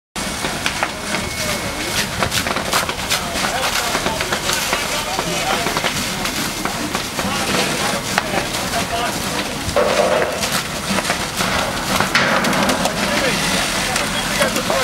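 Fire hose streams spraying onto a burning scrap and rubbish pile: a steady rushing hiss full of sharp crackles and pops, with voices in the background.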